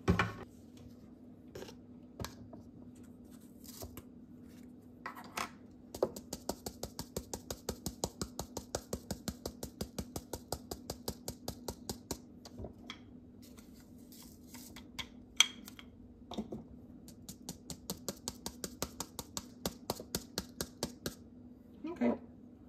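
Rapid, even tapping on a small plastic funnel seated in a glass spice jar, about five or six light ticks a second, to shake ground cumin through the narrow spout. It comes in two runs, one about six seconds in and one after the middle, with a single sharper clack between them.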